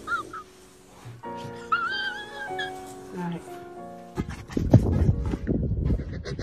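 A dog's high, wavering whine, briefly at the start and again about two seconds in, over background music with held notes. From about four seconds in, a loud, rough noise without a clear pitch takes over.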